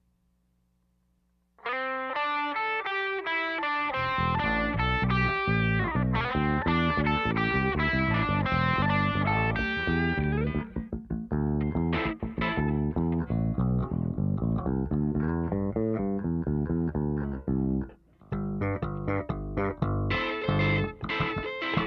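Electric bass guitar played during a soundcheck, starting after about a second and a half of faint hum. It runs a continuous line of plucked notes, higher at first, with deep low notes joining about four seconds in and a brief pause near the end.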